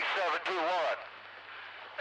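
CB radio chatter: a man talks for about the first second, then the radio carries only a faint hiss over a low steady hum.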